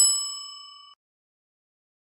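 A single notification-bell 'ding' sound effect: one bright metallic chime that rings out and fades away within about a second.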